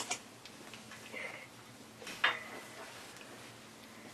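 A few scattered faint clicks and taps in a quiet room, with a sharper click right at the start and another a little after two seconds in.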